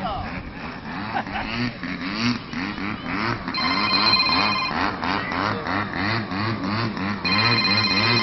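Model aerobatic airplane's engine being throttled up and down in a fast, even rhythm, the pitch rising and falling about twice a second, with two stretches of high-revving full power, about three and a half seconds in and again near the end, as the plane tumbles and hovers on its tail near the ground.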